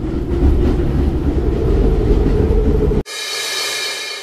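A steady low rumbling noise bed cuts off abruptly about three seconds in. A bright metallic shimmer, like a cymbal swell, replaces it, ringing with many steady tones and beginning to fade.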